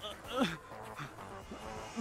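A person's short fight cry that falls steeply in pitch about half a second in, a brief low grunt about a second in, and another falling cry at the very end.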